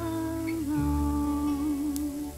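A voice humming a long held note with a slight waver, over a soft, slow instrumental accompaniment: a wordless passage of a ballad in a cartoon soundtrack.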